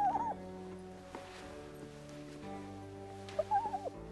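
A fox makes two short high calls that rise and fall, one at the start and another about three and a half seconds in, over soft, sustained background music.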